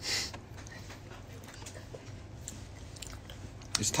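A person chewing a mouthful of hot dog sausage, with soft wet mouth clicks, after a short breathy burst at the start. A voice begins just at the end.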